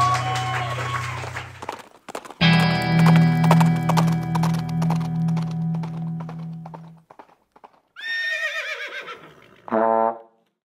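Acoustic guitar and a held sung note fade out, then a final chord is strummed at about two and a half seconds and rings until about seven seconds. Near the end comes a horse whinny, a wavering call falling in pitch.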